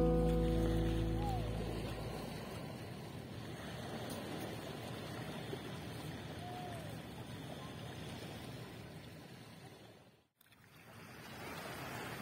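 A ringing musical chord fades out over the first two seconds, leaving the steady wash of small waves lapping on a pebble beach. The sound cuts out completely for a moment near the end.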